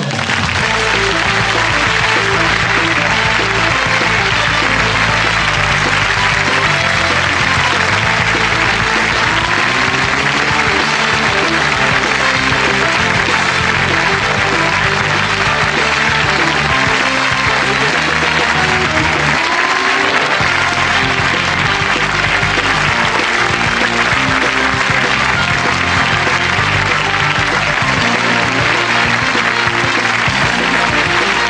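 Closing theme music, an instrumental with a steady bass line, playing over continuous studio-audience applause. It comes in right after the sign-off and runs on at an even level.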